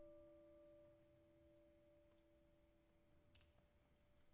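Faint single electric guitar note ringing out and slowly dying away, a pure tone with a couple of overtones, as the guitar is being tuned at the pegs. A faint click near the end.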